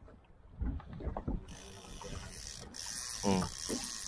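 A few knocks and clicks from fishing rod and reel gear being handled, then a steady high hiss from about a second and a half in.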